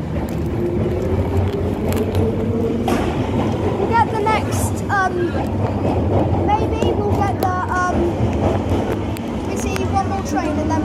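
Busy Underground station passageway: scattered voices of passers-by talking over a steady low rumble and hubbub.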